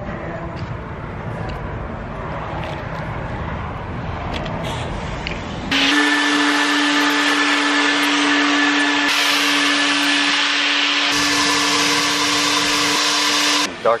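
Car wash vacuum hose switches on about six seconds in and runs as a loud, steady whine with rushing air. Before that there is only a quieter, even background noise.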